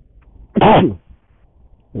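A man coughing twice: a loud cough with voice and falling pitch about half a second in, then a shorter cough near the end.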